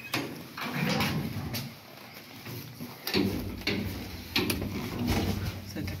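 Inner door of an old Zremb Osiedlowy lift car being opened by hand, with several clicks and knocks from the handle and door. A low hum comes in about three seconds in.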